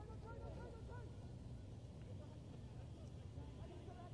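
Faint, distant shouting voices from the field, short calls repeating over a low steady background hum.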